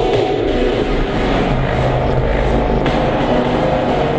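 Harsh noise music: a loud, dense, steady wall of rumbling noise with layered low drones.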